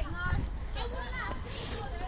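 Children's voices chattering and calling over one another, with a steady low rumble on the microphone.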